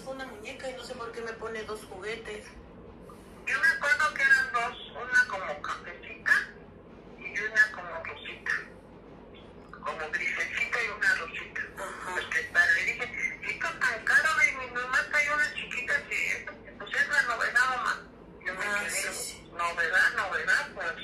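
A recorded phone conversation playing back: voices talking in stretches, with short pauses between them.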